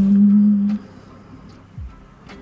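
A woman humming a steady, loud 'mm' that stops just under a second in. It is over lo-fi hip-hop background music with soft kick-drum beats.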